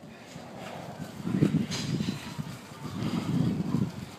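Jeep Wrangler hauled by rope across asphalt: a low rumble of it rolling, swelling twice as the pullers heave.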